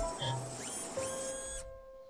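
Short electronic intro jingle: rising glides into a held chord whose upper notes cut off sharply about a second and a half in, leaving one lower tone fading out.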